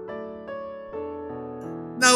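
Background piano music: sustained notes that move to a new chord about every half second.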